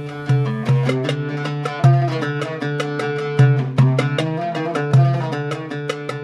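Oud picked with a narrow risha held at a sharp angle for strong downstrokes: a rhythmic phrase of quick picked notes over a low note struck again about once a second.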